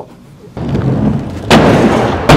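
Aggressive inline skates rolling over wooden skatepark ramps, then a sudden loud impact about one and a half seconds in as the skater lands on a ledge, followed by the scrape of the frame grinding along it, with a boomy echo from a large hall.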